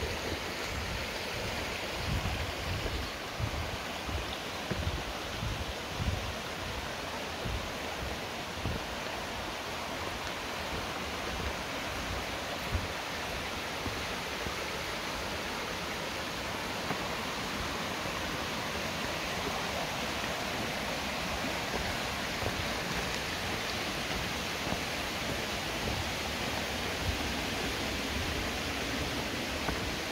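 Shallow stream running over rocks, a steady wash of water. Irregular low bumps and buffets come and go over it, mostly in the first several seconds and again near the end.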